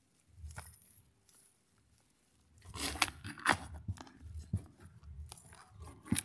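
Hands digging and scraping potting soil in a plastic pot: a few faint rustles at first, then a run of crunching and scraping from about halfway through.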